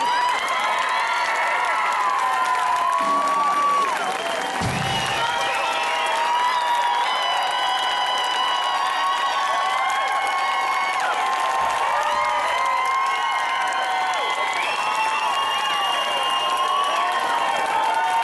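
Theater audience cheering and applauding in response to an on-stage marriage proposal: many high shrieks and whoops overlapping on top of steady clapping, kept up without a break.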